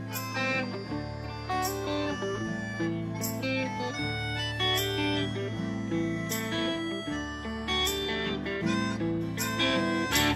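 Live band playing an instrumental passage with no vocals: guitars over bass and drums, with a cymbal crash about every second and a half.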